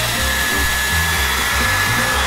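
Handheld hair dryer running steadily: a constant rushing blow with a steady high whine. A low bass line of background music plays under it.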